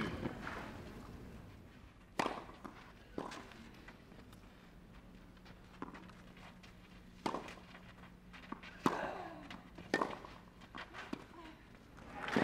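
Tennis ball on a clay court: sharp single pops about a second or so apart as the ball is bounced, served and hit back and forth in a rally.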